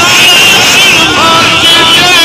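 A man's voice reciting verse in a drawn-out, gliding melody through a loud public-address system.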